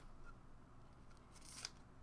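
Near silence: room tone with a few faint clicks, one about a third of a second in and a small cluster about a second and a half in.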